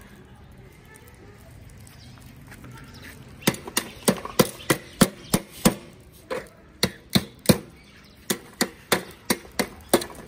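Charcoal in a metal barbecue grill being worked with tongs: a run of sharp clicks and knocks, about three a second, starting a few seconds in with a short pause near the middle.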